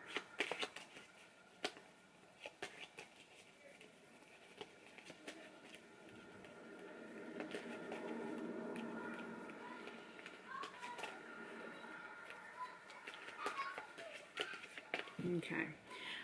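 A tarot deck being shuffled by hand: soft card-on-card clicks and slides, with a longer stretch of rustling shuffle in the middle.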